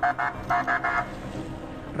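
Military pickup's horn sounding in quick short blasts, several in a row in the first second, then the low hum of the convoy's vehicles running.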